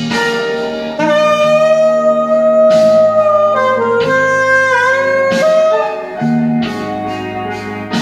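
Mandalika saxophone playing a blues phrase over a backing track of guitar and drums: a long held note from about a second in, then lower notes with a pitch bend that scoops down and back up.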